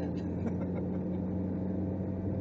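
Ferrari 458 Italia's 4.5-litre V8 running at a steady speed, a low, even engine drone.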